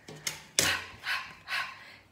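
A woman's quick, breathy exhalations, three in a row and fading, as she catches her breath after dancing along to a movement chant.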